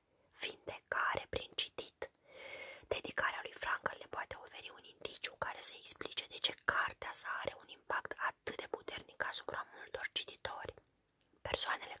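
A woman reading aloud in Romanian in a hoarse whisper, her voice all but lost to laryngitis, with short pauses between phrases.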